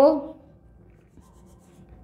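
Marker pen drawing on a whiteboard, faint rubbing strokes, after a woman's spoken word trails off at the start.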